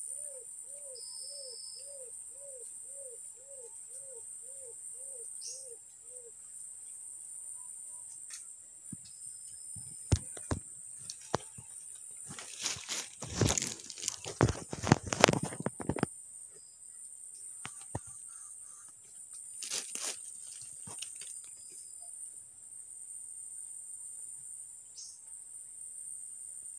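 Insects buzz in a steady high drone throughout. In the first six seconds a low call repeats about twice a second, and from about ten to sixteen seconds loud rustling and knocking, the phone being handled and moved through foliage, is the loudest sound.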